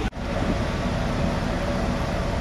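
Steady rumble and hiss of a cruise ferry's machinery and ventilation heard on its open upper deck, with a faint hum in it. The sound drops out for a split second just after the start.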